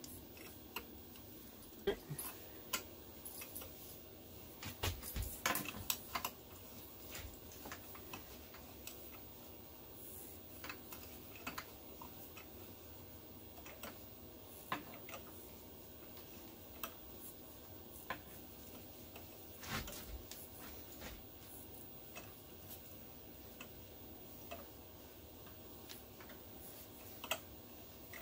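Faint, scattered clicks and ticks from a hand tap and its tap holder being turned by hand, cutting threads in a drilled 3/8-inch hole in 3/16-inch mild steel plate. The clicks come irregularly, a second or several seconds apart with a few grouped together, over quiet room noise.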